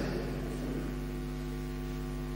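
Steady electrical mains hum in the sound system, a low hum with a ladder of evenly spaced overtones, while the echo of the last spoken words fades away in the first half second.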